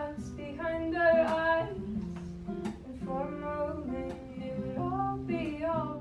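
A woman singing while strumming an acoustic guitar.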